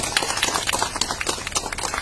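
Applause: a group of people clapping hands, a quick, irregular run of claps.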